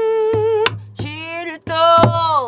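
A woman singing pansori: a long held note, then two shorter phrases, the last sliding down in pitch. Sharp strokes on a buk barrel drum keep the beat under her.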